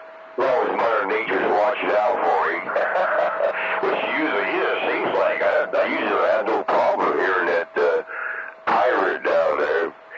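CB radio receiving voice transmissions on channel 19: garbled, hard-to-follow talk over the receiver with a steady whistle under it, broken by a few short gaps.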